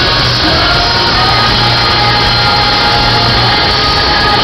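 Live rock band with electric guitars playing loudly in an arena, heard from within the crowd.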